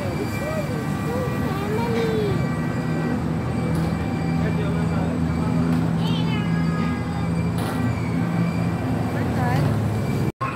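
Carousel running, with a steady low mechanical hum from its drive under the ride. A high voice calls over it in the first couple of seconds.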